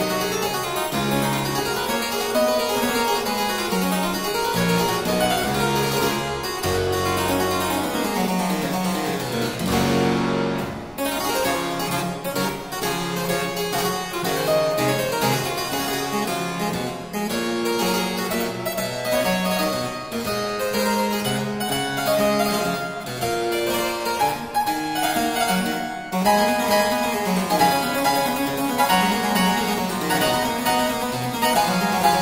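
Solo harpsichord playing a lively French baroque piece in quick running notes over a bass line. About ten seconds in it settles on a held, ringing chord, then the quick figures start up again.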